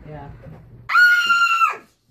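A single loud, shrill scream on one high held pitch, starting about a second in and lasting under a second before cutting off.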